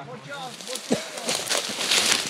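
Rustling and crackling of clothing, gear and brush close to the microphone as a soldier moves in undergrowth, growing louder in the second half. A faint voice comes early on, and there is a thump about a second in.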